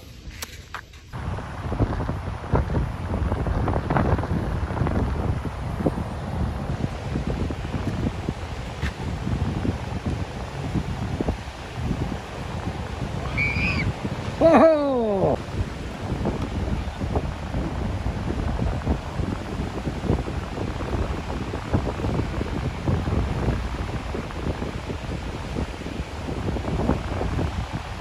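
Gusty wind buffeting the microphone over choppy surf washing onto a beach. About halfway through comes a short cry that falls in pitch.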